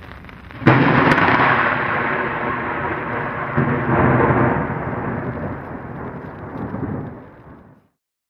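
Thunder sound effect: a sudden loud crack about two-thirds of a second in, then rolling rumble that swells again around three and a half seconds and fades away just before the end.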